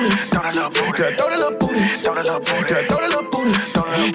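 A hip hop track playing: rapping over a beat with regular drum hits.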